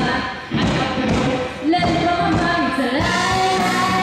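Live rock band playing: a drum kit keeps the beat under guitar, and a woman sings into a microphone with gliding notes.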